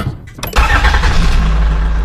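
Engine sound effect: a short burst, then from about half a second in a loud, steady engine rumble.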